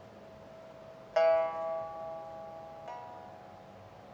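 Pipa playing slow, sparse single plucked notes, each left to ring out and fade: a loud note about a second in and a softer one near the three-second mark.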